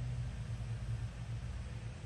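A steady low machine hum with an even faint hiss over it.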